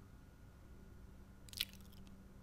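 A single mouse click about one and a half seconds in, over a faint steady electrical hum.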